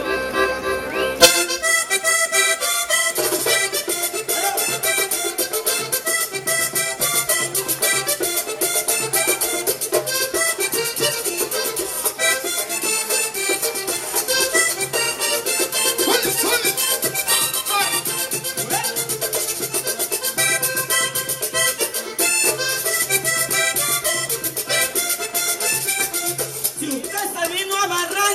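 Live vallenato music: a button accordion playing a melody, joined about a second in by a fast, steady scraping rhythm from a guacharaca and hand-drummed caja. This is an instrumental passage with no singing.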